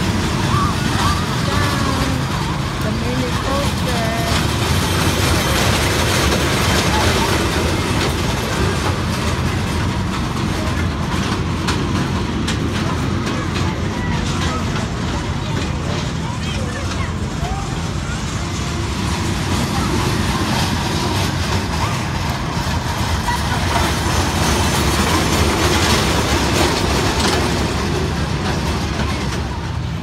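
Busy fairground midway: people talking all around over a steady low rumble from the rides running.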